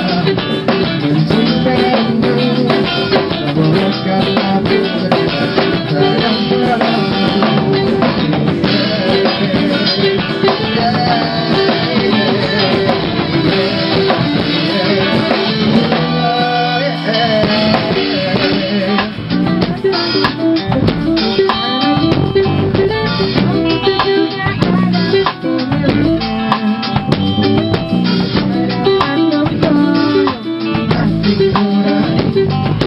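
A live rock band playing a song on electric guitars and drum kit, picked up by a camera's built-in microphone and sounding somewhat distorted. The bass end drops out for about a second halfway through, then the full band comes back in.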